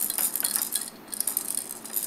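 Plastic baby activity toy rattling and clicking as a baby handles it, a quick, high, jingly clatter of small plastic parts.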